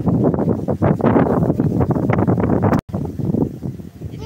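Wind buffeting the microphone: a loud, gusty rumble that cuts out for an instant about three seconds in.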